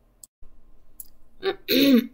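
A brief dead-quiet gap from a break in the recording, with a couple of faint clicks. A woman's voice starts talking about one and a half seconds in.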